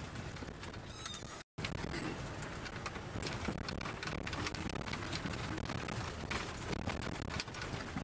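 Off-road vehicle driving over a rough dirt track, heard from inside the cab: a steady engine and road rumble with many small rattles and knocks from the bumpy ground. The sound cuts out completely for a moment about one and a half seconds in.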